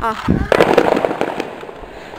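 A sudden burst of rustling, crackling noise from the phone's microphone being handled as the camera is swung down, fading over about a second, with a brief low rumble just before it.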